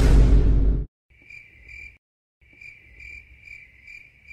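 A loud, deep burst of noise that cuts off just before a second in, then crickets chirping in a steady, high, pulsing trill, in two runs with a short dead-silent gap between them: a comic sound effect marking silence.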